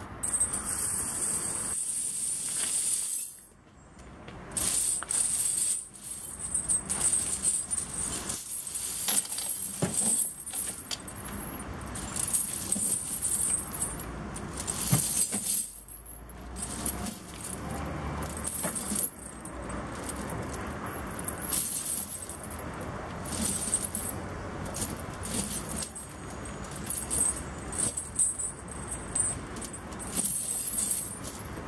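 Steel snow chains clinking and rattling in irregular bursts as they are handled and wrapped around a truck's drive-axle tyre. A steady noise fills the first three seconds.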